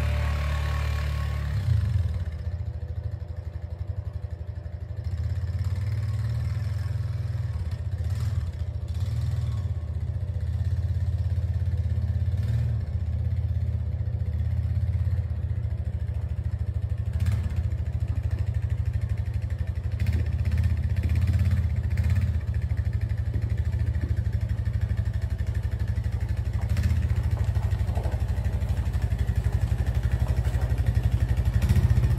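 Quad ATV engine running, revving up and down as it manoeuvres, and getting louder near the end as it comes close.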